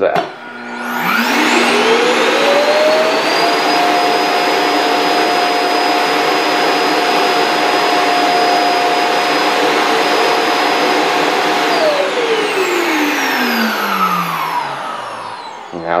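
Proscenic M7 Pro automatic dust collector station's suction motor emptying the robot vacuum's dustbin: it spins up with a rising whine about a second in, runs loud at a steady pitch for about eight seconds, then winds down with a falling whine and stops near the end.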